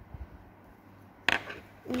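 Quiet room tone, then one sharp clack a little over a second in as the metal tweezers are put down; a child's voice starts right at the end.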